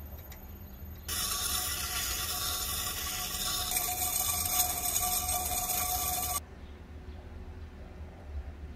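Steel kitchen knife blade ground on a wet, motor-driven grinding wheel: a loud, steady hissing scrape that starts suddenly about a second in and cuts off sharply about five seconds later, over a low hum.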